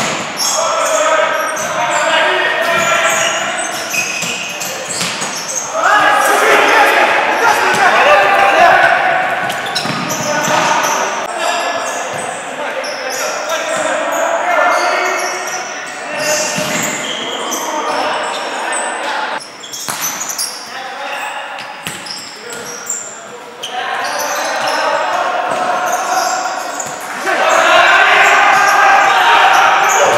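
A futsal ball being struck and bouncing on a wooden hall floor, echoing in a large sports hall, with voices talking and calling out over it.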